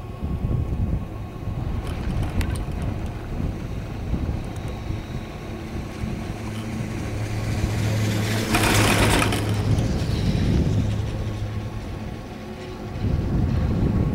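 Chairlift ride with a steady low rumble of wind on the microphone. A little past halfway a hum builds and the chair clatters briefly and loudly as it passes over a lift tower's sheave wheels, then the hum fades.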